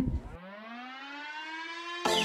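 A single siren-like tone rises slowly and smoothly in pitch and leads straight into background music.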